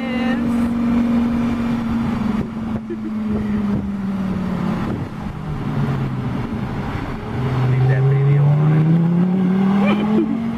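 Lamborghini sports car's engine running close alongside. Its pitch sinks as it eases off for the first several seconds, then climbs steadily as it accelerates, louder over the last few seconds.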